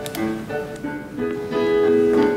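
Piano playing a ragtime-style tune, the accompaniment of a comic song played back through a room's speakers.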